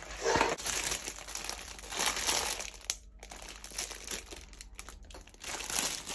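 Plastic fruit punnet with a film lid crinkling as it is handled and slid across a countertop, in a few separate bursts of rustling.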